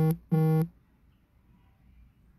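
Two identical electronic beeps in quick succession, each about half a second long, at one steady buzzy pitch, then quiet room tone.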